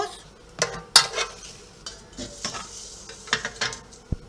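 A fork clinking and scraping against a stainless steel bowl as raw eggs are beaten, with a run of sharp, irregular metallic clicks that ring briefly.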